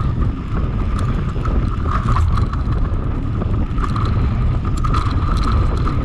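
Mountain bike descending a dirt trail: wind buffeting the microphone and tyres rumbling over the dirt, with frequent clicks and rattles from the bike over bumps. A steady high whine runs under it.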